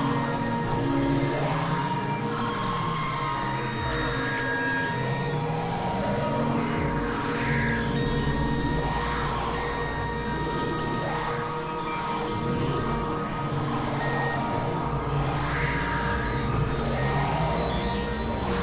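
Experimental electronic drone music from Novation Supernova II and Korg microKORG XL synthesizers. Several steady held tones, one a thin high whine, run under lower tones that slide up and down every couple of seconds, at a steady loud level.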